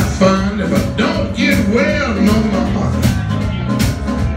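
Live blues band playing a slow blues number with a steady beat, a bending lead line carried over the band.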